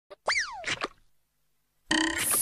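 Cartoon 'boing' sound effect: a tone that jumps up quickly and then slides down over about half a second, followed by two short knocks and then silence.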